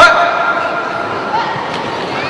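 A single sharp impact right at the start, followed by a short ringing tone that fades within about a second, over steady crowd noise in a large hall.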